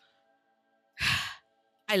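A woman's single breathy sigh, about half a second long, about a second in, a fond sigh just before she declares her love for a character.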